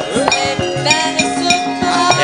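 Javanese gamelan music: ringing metal keyed instruments sound steady notes over a regular pattern of low drum beats.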